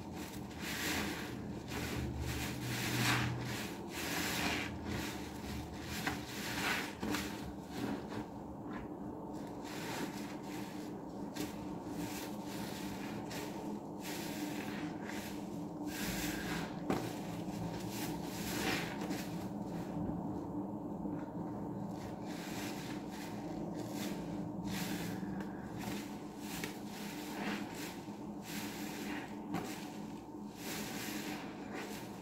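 Foam-soaked sponges squeezed and kneaded by hand in a tub of thick soap suds, giving repeated wet squelches in an irregular rhythm.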